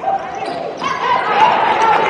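Live basketball game audio: a ball dribbling on the hardwood court, with voices in the background.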